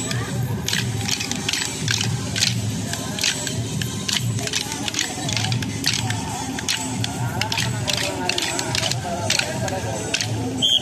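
Kolatam stick dance: many hand-held sticks clacking together in sharp clicks, several a second, over a song with singing and a pulsing bass beat.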